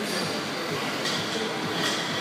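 Steady gym background din with a short, bright metallic clink near the end, typical of weight plates or dumbbells knocking.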